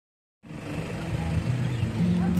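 Roadside street ambience beginning about half a second in: a vehicle engine running, with voices in the background.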